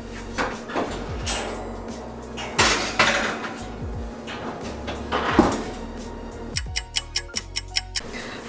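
Metal cupcake tin and kitchen utensils knocking and scraping as the filled tin is handled and put into the oven, with music playing underneath. Near the end comes a quick, even run of sharp beats.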